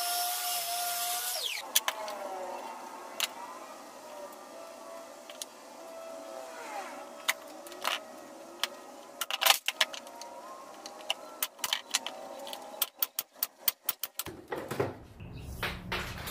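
Power tool work during cabinet assembly: a motor whine that wavers up and down in pitch, with sharp clicks and knocks throughout and a quick run of them near the end.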